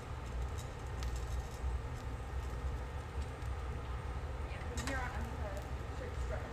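Steady low rumble of a glassblowing hot shop's gas-fired burners running, the glory hole and bench torch both lit, with faint voices about five seconds in.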